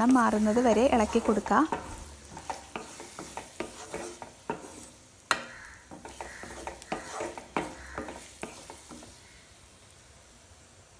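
A spatula stirring and scraping chopped onions and green chillies frying in oil in a nonstick kadai: irregular scrapes and taps over a light sizzle as the onions soften, fading toward the end. A voice is heard in the first second or so.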